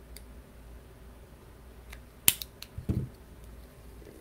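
Faint clicks of small hand tools on a workbench mat, with one sharp snap about two seconds in and a couple of lighter clicks just after. The sounds come from handling a pair of small flush cutters after trimming clear heat-shrink tubing.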